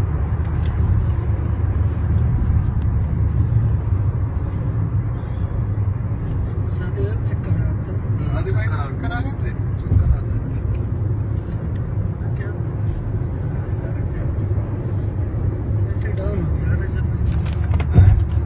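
A car being driven, with a steady low rumble of engine and road noise throughout.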